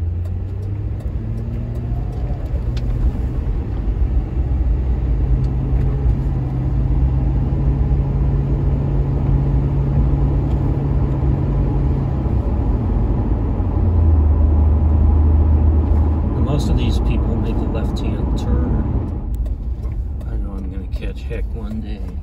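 Ford Crown Victoria's V8 engine and road noise from inside the cabin as the car pulls out onto the road and accelerates. The engine note rises over the first few seconds, holds steady, drops to a lower tone, and eases off near the end as the car slows.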